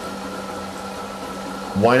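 Sous vide immersion circulator running in its water bath: a steady hum of its motor and circulating water, with a faint constant tone. A man's voice comes in near the end.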